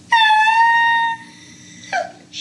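A person's voice held on one high, steady falsetto note for about a second, then a short vocal sound near the end.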